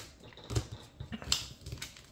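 Trading cards being handled and sorted by hand, with a few short, irregular clicks and snaps of card against card.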